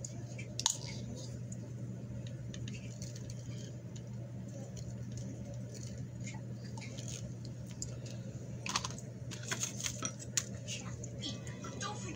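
Light clicks, taps and rustles of painted cardboard toilet-roll rings being handled, over a steady low hum. There is a sharp click about half a second in, and the clicking comes thicker and faster a little over two thirds of the way through.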